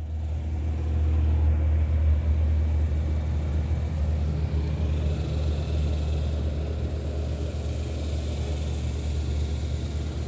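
Steady low rumble.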